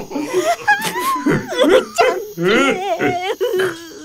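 Animated characters' voices laughing in high, wavering peals, with a short spoken exclamation at the start.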